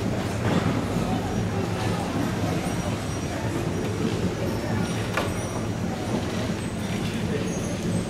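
Steady rolling rumble of wheeled marimba and keyboard-percussion carts being pushed across a hardwood gym floor, with a few faint clicks and knocks, under a murmur of voices.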